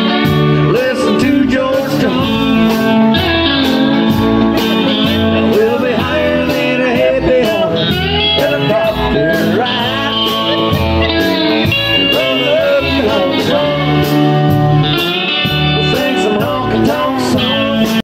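A band playing country-blues music: guitar over bass and drums with a steady beat.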